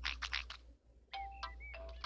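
A short bell-like musical cue from a cartoon soundtrack: a few chiming notes that start about a second in, after a few short sounds and a brief drop to near silence.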